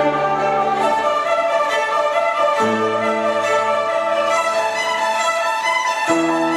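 A group of young violinists playing a melody together, with low accompaniment chords underneath: one chord ends about a second in and a new one comes in about two and a half seconds in, most likely from the piano accompanist.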